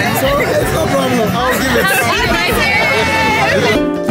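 Crowd chatter: many people talking at once. Music cuts in abruptly just before the end.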